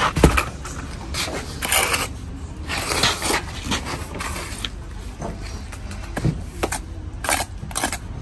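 A steel bricklaying trowel scraping wet mortar onto a concrete block, in several short, rough strokes. There is a sharp knock just after the start.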